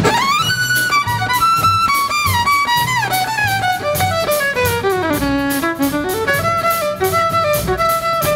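Jazz violin solo with pops orchestra and drum kit accompaniment: one melody line slides up at the start, then winds down in short steps over a steady cymbal beat.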